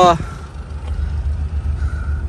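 A short spoken 'uh', then a steady low rumble.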